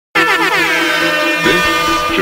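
Air horn sound effect blasting at the start of a hip-hop track, its pitch sliding downward. The beat's bass and a voice come in about a second and a half in.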